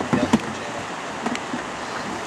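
Steady rushing noise of shallow river water flowing, with a sharp knock about a third of a second in.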